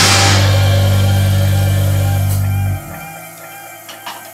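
A rock band's final chord, a low electric bass and guitar note, is held and rings steadily, then is cut off abruptly about three-quarters of the way through. Faint ringing and a few small clicks are left after it.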